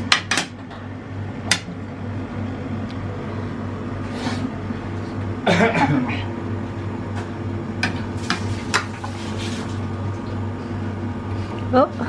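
Metal spoon and tongs clinking against ceramic plates and a lobster shell during plating: a dozen or so sharp, separate clinks over a steady low kitchen hum. A brief voice sound comes about halfway and again near the end.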